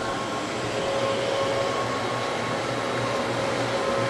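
Rotary floor buffer with an abrasive screen running over a red oak floor, scuffing off the old polyurethane, with the dust extractor hosed to it running too. A steady machine drone with a steady whining tone.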